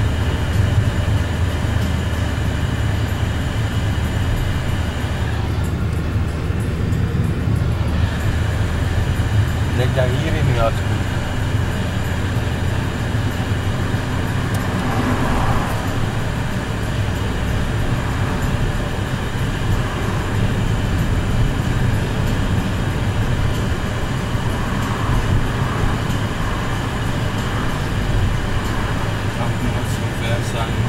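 Steady engine and road rumble heard from inside the cabin of a moving car.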